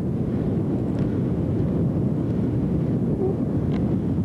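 Wind buffeting an outdoor camcorder microphone: a steady, dense low rumble.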